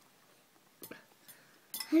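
A light clink of a fork against a ceramic bowl about a second in, with a fainter tap soon after, in an otherwise quiet room; a man starts talking near the end.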